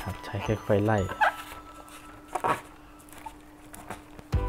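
Soft background music, with a short dry rustle about two and a half seconds in as a foam glider wing is handled and folded by hand.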